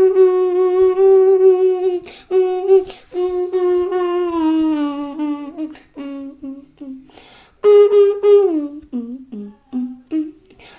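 A person humming a slow tune with closed lips: long held notes that slide downward, then shorter notes, with brief breaks between phrases and a higher note near the end that falls away again.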